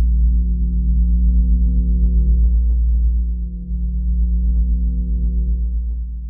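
Sustained low synth bass drone, a few steady deep tones held without a beat, with faint ticks over it. It dips briefly about three and a half seconds in and starts to fade near the end as the track closes out.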